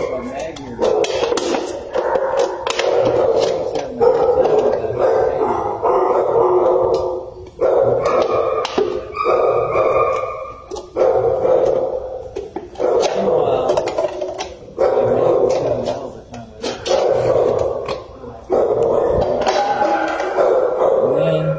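Shelter dogs barking and howling over and over in a concrete kennel run, in bursts of a second or two with short breaks between.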